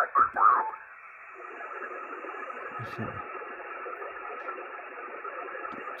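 Receiver audio from a Yaesu FT-710 HF transceiver's speaker. A brief snatch of single-sideband voice in the first second gives way to a steady, band-limited hiss of band noise as the receiver is tuned off the station.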